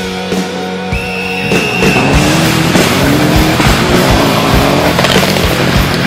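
Music at first. From about a second and a half in, a rally car's engine comes in, revving hard on a gravel stage, with sharp cracks and tyre and gravel noise, and the music carries on underneath.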